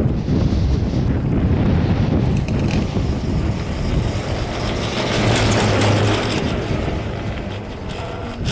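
Wind buffeting the microphone on a moving chairlift: a loud, dense low rumble, with a brief steadier hum and more hiss about five seconds in.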